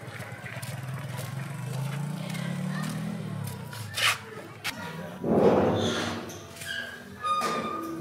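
A hand knocks sharply on a sheet-metal gate about four seconds in, followed a second later by a louder, longer bang, under a low background drone.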